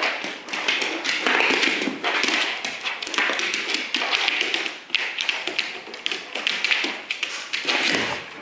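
A boxer's claws and paws clicking, tapping and scrabbling fast on a hardwood floor as he scrambles after a laser dot, with a thud now and then.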